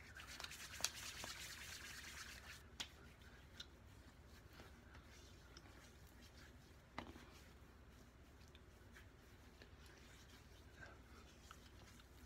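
Near silence: faint rustling of hands rubbing aftershave into the face, strongest in the first couple of seconds, with a few small soft clicks, the sharpest about seven seconds in.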